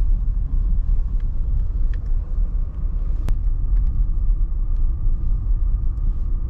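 Steady low engine and road rumble heard inside a car's cabin while driving slowly, with a single sharp click about three seconds in.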